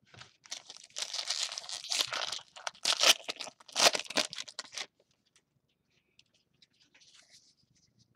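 Foil wrapper of a trading-card pack being torn open and crinkled, a crackling run of about four seconds with its loudest rips near the middle. After that come only faint ticks as the stack of cards is handled.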